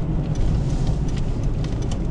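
Steady low engine and tyre rumble heard inside a moving car's cabin while driving in city traffic.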